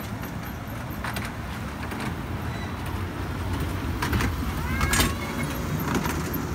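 Small children's ride-on train running on its narrow track: a steady low rumble with a few sharp metallic clacks, and a short squeak near five seconds in.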